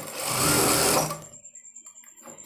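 Industrial flat-bed lockstitch sewing machine running in a short burst as it sews piping onto fabric, stopping suddenly about a second in.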